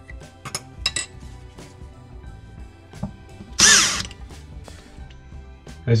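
Light clicks of the chrome soap dispenser and its metal parts being handled at the countertop, with a loud, sharp noisy burst lasting about half a second, about three and a half seconds in, over faint background music.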